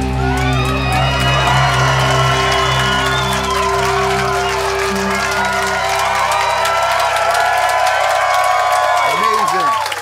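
A small crowd cheering, whooping and shouting, with the band's last chord ringing out from the guitars and bass and fading away over the first half.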